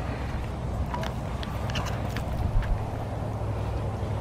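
Wind rumbling on a handheld microphone outdoors, with a few faint clicks in the middle.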